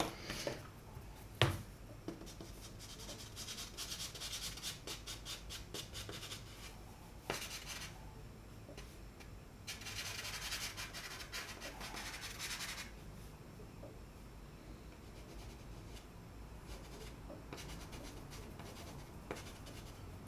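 Chalk pastel stick rubbing and scratching across textured paper in quick, short strokes. About ten seconds in comes a longer stretch of continuous scribbling. The sound is faint throughout.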